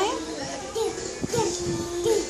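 A toddler's voice babbling with no clear words, over music playing in the background that holds one steady note for about a second.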